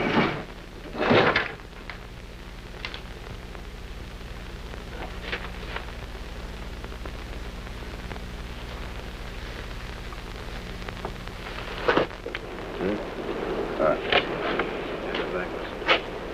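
Bricks and debris being shifted and scraped by hand, with two loud rustling bursts in the first second and a half and a few faint clicks after, over a steady low hum. From about 13 seconds in, indistinct voices.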